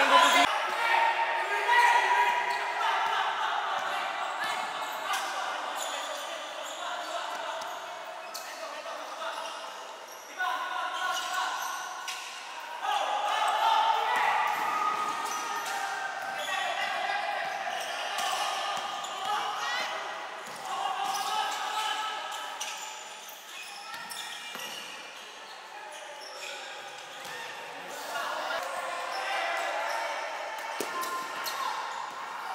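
Basketball being dribbled and bouncing on an indoor court during play, with players' and onlookers' voices calling out, echoing in a large gym.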